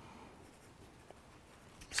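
Pen writing on paper, faint scratching strokes as the words are written by hand.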